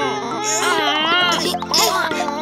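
Wordless high-pitched cartoon character voices straining with effort, whining and grunting, over background music with steady low notes.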